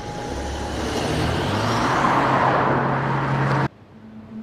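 A car driving, its engine and road noise swelling louder over about three seconds, then cutting off suddenly near the end.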